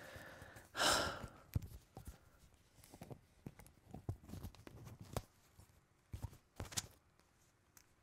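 Clip-on lavalier microphone being handled and re-clipped to a shirt: scattered faint clicks and rubs of fingers and fabric on the mic, with a louder brushing rush about a second in.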